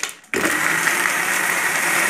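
Electric countertop blender switching on sharply about a third of a second in and running at a steady speed with a constant whine, churning milk, ice cubes and sugar in its jar.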